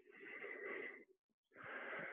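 A man breathing hard, out of breath while recovering from high-intensity bodyweight exercise. One long breath of about a second is followed by the next beginning near the end.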